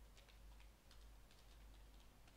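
Faint computer keyboard keystrokes: a handful of irregularly spaced clicks as a terminal command is typed.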